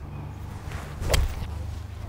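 A six-iron striking a golf ball off fairway turf: a single sharp strike about a second in.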